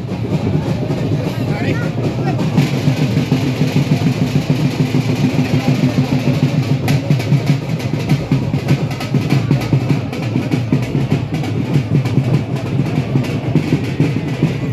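Procession crowd noise, many voices together, with drumbeats coming through more and more in the second half.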